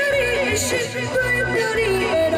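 A woman singing a song into a microphone, her voice wavering with vibrato, over backing music with a steady bass beat.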